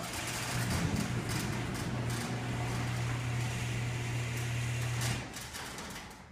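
Genie garage door opener's motor running steadily with a low hum as it lowers the door; it stops about five seconds in as the door shuts.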